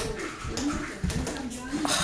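A toddler's voice babbling softly, with a couple of short low knocks on a hardwood floor from a small ball or the child moving.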